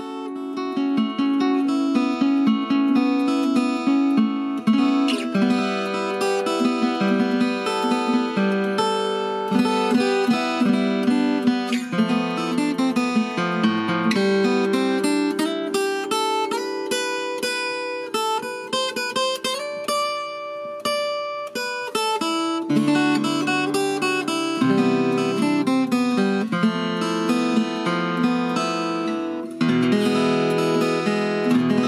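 All-mahogany acoustic guitar played with a flatpick: a continuous tune mixing picked single notes and strummed chords. It is being played freshly repaired, with a new glued-in through-saddle.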